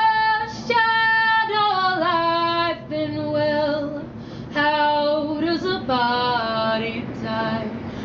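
A woman singing a cappella, holding long notes that slide between pitches, with short breaths between phrases. A faint steady low hum runs underneath.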